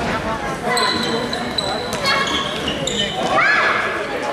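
Echoing voices of players and spectators in a sports hall during an indoor football match, with knocks of the ball on the wooden floor. Near the end there is one shrill sound that rises, holds and falls.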